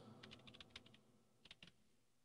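Faint typing on a computer keyboard: a quick run of keystrokes in the first second, then two more clicks about a second and a half in.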